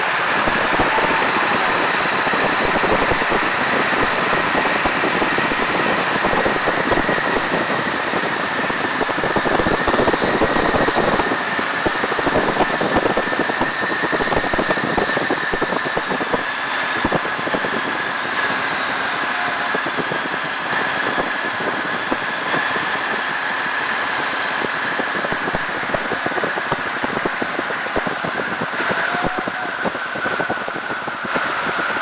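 Biplane in flight: its engine running steadily under loud rushing slipstream, heard from a camera on the top wing, with a steady whine through it. The noise eases slightly about halfway through as the aircraft comes down.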